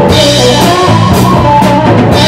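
Live rock band playing loudly without vocals: a Pearl drum kit with Zildjian cymbals beating out a rock rhythm, with electric guitar and bass guitar.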